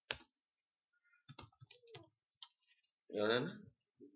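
Computer keyboard keys clicking as text is typed, with one keystroke right at the start and a run of quick keystrokes through the middle. A short voiced 'uh' follows near the end.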